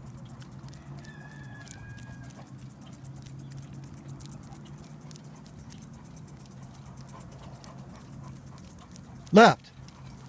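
A dog sulky rolls along asphalt behind a trotting Great Dane, with a steady low rolling hum and a quick run of light ticks from the dog's feet on the pavement. A thin high squeak sounds briefly early on. Near the end comes one short, loud spoken command from the driver.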